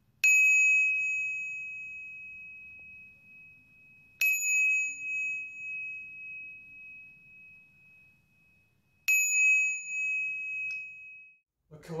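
A small metal bell struck three times, about four to five seconds apart. Each strike rings out with a clear high tone that fades slowly over several seconds.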